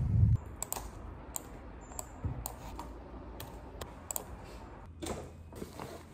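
Car interior rumble that cuts off within the first half second, then light, sparse clicks a fraction of a second apart, typical of keys tapped on a laptop keyboard, with a brief rustle near the end.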